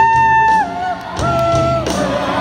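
Pop song performed live through a PA: a singer holds a long high note, breaks off, then holds a second, slightly lower note, over a backing track with a steady beat.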